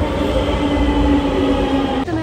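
Metro train moving along the platform: a loud, steady low rumble with a steady whine above it.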